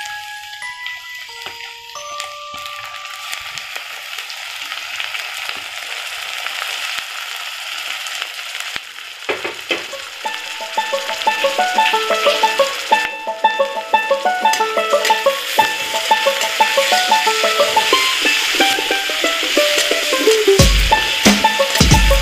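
Onions, garlic and chillies sizzling in hot oil in a metal wok, the sizzle growing steadily louder. Near the end a spatula stirs and knocks in the pan. Light instrumental music with a plucked melody plays over it.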